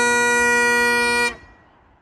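Great Highland bagpipe holding a long final note over its steady drones, then stopping abruptly about a second and a quarter in, the sound dying away quickly.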